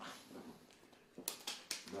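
US dollar banknotes being counted by hand: a few crisp paper flicks and rustles in the second half, after a hummed 'mm' at the start.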